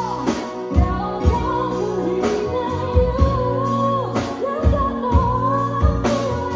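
Live band performing a cover song: a woman sings long, held melody notes over drum kit, bass, guitar and keyboard, with regular drum hits.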